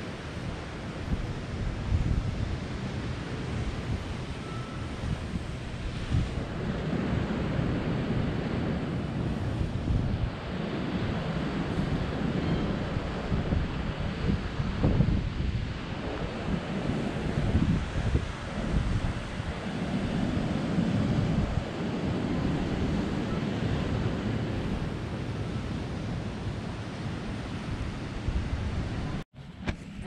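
Wind blowing across the microphone: a low rushing noise that rises and falls in gusts, cutting off suddenly near the end.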